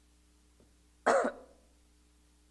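A man coughs once: a single sharp cough about a second in that dies away within half a second.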